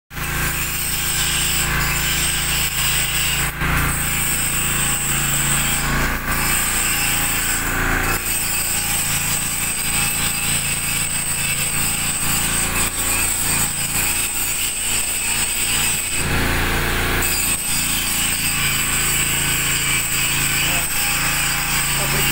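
Electric arc welding on a steel pipe: the arc's steady crackle and hiss, with a low steady hum underneath.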